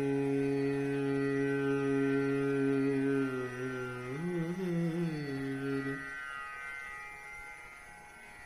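Dhrupad alap singing: a male voice holds one long, steady note, rises and wavers in pitch about four seconds in, and breaks off near six seconds, leaving a faint fading tail.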